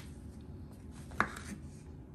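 Kitchen knife cutting a tomato on a wooden cutting board, with one sharp tap of the blade on the board about a second in, over a faint steady low hum.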